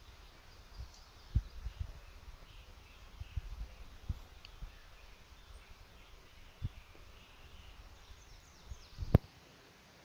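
Quiet outdoor ambience with faint bird chirps and a few short, low thumps, then one sharp click about nine seconds in, after which it falls quieter.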